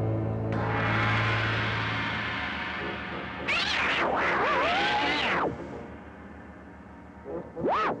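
Giant-monster film roar: a long, warbling call about two seconds long whose pitch rises, wavers and falls, over dark orchestral film music and a hissing wash. A shorter, arching call comes just before the end.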